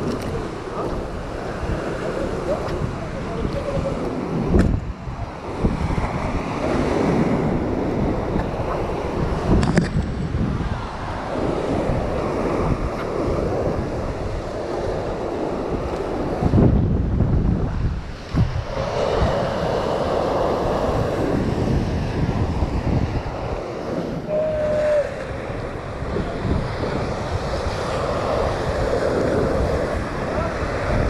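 Sea surf breaking and churning against rocks, with wind buffeting the microphone.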